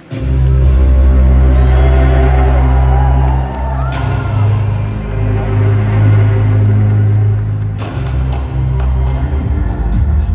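Loud amplified concert music through the arena sound system. Deep, sustained synth bass notes start suddenly and hold, with the sound shifting about four seconds in and again near eight seconds.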